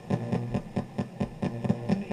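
A PSB7 ghost box sweeping rapidly through radio stations and played through a karaoke machine's speaker. Its output is chopped fragments of radio audio, some of them music, broken by regular clicks about four or five times a second as it jumps from station to station.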